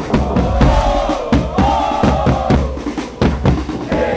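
Football supporters' drums beating a steady rhythm, about four strokes a second, under a crowd of fans chanting in unison.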